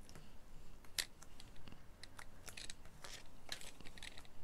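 Small sharp clicks and scratches of a craft pick tool working foam adhesive dimensionals: lifting the dots off their backing sheet and pressing them onto a paper strip. The loudest click comes about a second in.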